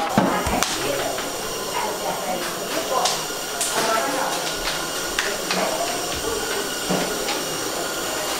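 Steady hiss of a gas burner under a large steaming aluminium pot, with scattered knocks and clatter of kitchen utensils and pot lids, and voices talking in the background.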